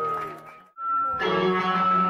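Live rock band with violin and electric guitars: the playing drops away almost to silence under a second in, leaving one held high note, then the full band comes back in with a strong low bass note and chords.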